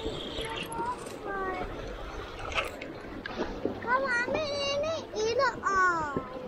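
A young child's high voice vocalizing in a sing-song way, mostly in the second half, over a steady wash of river current.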